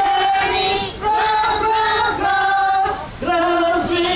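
A woman singing a simple children's song into a microphone, with children's voices joining in; held notes in short phrases of about a second each.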